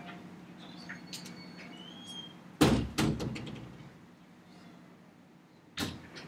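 Knocks and clatter in a room: two loud sharp knocks close together about two and a half seconds in, the first the loudest, and another near the end, among faint scattered clicks over a low steady hum.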